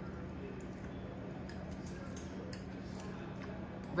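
A few faint clinks of forks against a ceramic plate, over a steady low hum.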